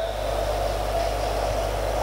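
Steady hiss with a low, constant hum underneath: background noise of the room and the sound system, unchanging throughout.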